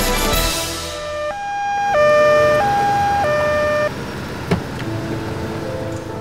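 Two-tone police siren sounding its high–low 'tatü-tata' call twice, then cutting off abruptly. A short sharp knock follows about half a second later.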